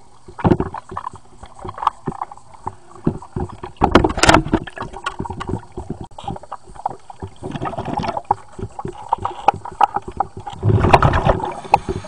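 Underwater sound in a swimming pool as a diver moves along the wall: irregular clicks and knocks with gurgling water, and louder bursts about four seconds in and again near the end.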